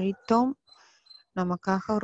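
A woman speaking Tamil in a talk, pausing briefly about half a second in and resuming after about a second; a faint, thin, high-pitched steady tone sounds under the voice.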